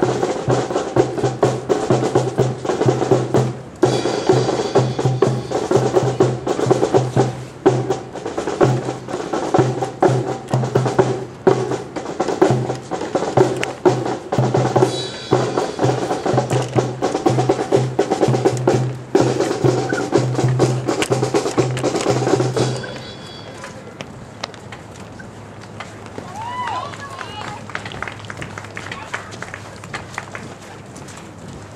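Marching band playing, with drums and a pulsing low brass beat under horns, that stops abruptly about two-thirds of the way through. After it, quieter outdoor sound with faint voices.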